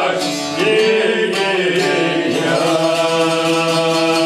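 Albanian folk song played on çifteli, two-stringed long-necked lutes, plucked rapidly under a singing voice whose pitch slides and wavers. About two and a half seconds in the voice falls away and the lutes carry on alone with a steady droning accompaniment.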